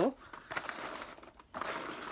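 Packaging crinkling as a cardboard jigsaw puzzle and its pieces are handled, in two stretches with a short pause about one and a half seconds in.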